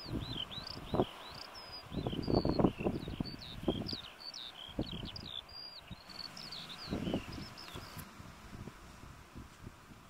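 A songbird singing a quick, unbroken run of high chirping and warbling notes, fading out a little before the end. Wind gusts on the microphone, loudest in the first half.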